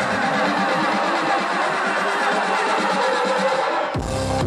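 Electronic dance music played loud on a club sound system during a build-up: the bass is pulled out and sweeping synth glides fill the mix. The deep bass comes back in suddenly right at the end.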